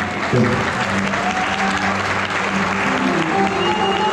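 Audience applauding, with music coming in underneath the clapping.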